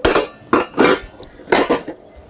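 Stainless steel plates and utensils clattering and clinking against each other as they are washed, in about three short bursts.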